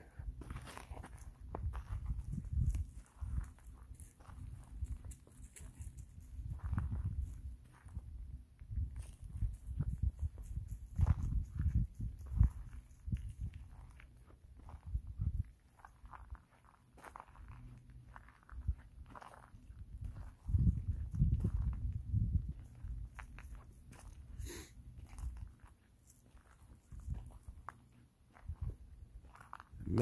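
Footsteps walking through dry fallen leaves: irregular crunching and thudding steps, with a few pauses.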